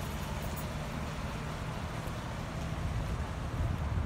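Steady low rumble of idling vehicle engines and road traffic.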